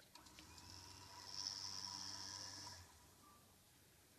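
A winch running for about three seconds as it pulls tension onto the rope in a 4:1 haul system. It makes a steady low hum with a high whine and stops abruptly.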